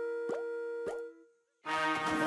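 Cartoon score holding a chord, with two quick rising plop sound effects about half a second apart. The music stops a little after a second in and, after a short silence, new music starts near the end.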